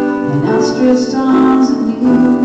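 A woman singing, accompanying herself on an electronic keyboard.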